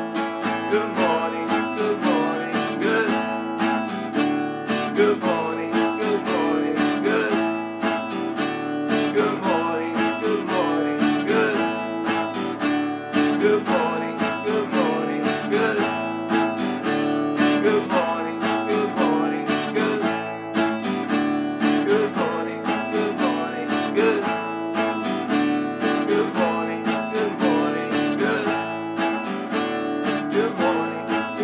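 Acoustic guitar strummed in a steady driving rhythm, several strokes a second, playing open chords; later it alternates between A and D.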